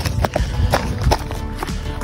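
A runner's footfalls on a loose gravel and stone trail, about three steps a second, under background music.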